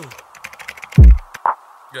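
Rapid clicking of computer-keyboard typing, with a loud, deep bass hit about a second in that falls steeply in pitch.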